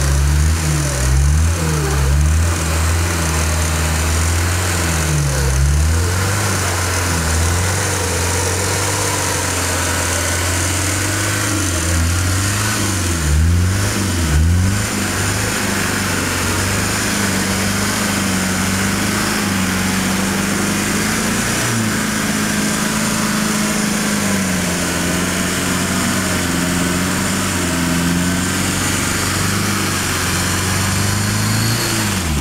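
Off-road 4x4's engine running under load as it crawls through a deep rut, the revs dipping and picking up again several times in the first fifteen seconds, then holding fairly steady.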